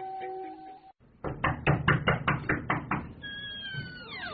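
Guitar music breaks off, then a quick, even run of about ten knocks, about five a second. Near the end a cat meows in one drawn-out, slightly falling call.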